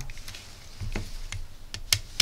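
Small clicks and taps from handling a DC-DC converter module's screw terminal while a wire is fitted. A sharp click near the end comes as a screwdriver meets the terminal screw.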